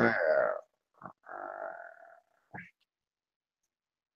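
A man's brief croaky throat sounds, low and voice-like, following a last spoken word, then silence for the final second or so.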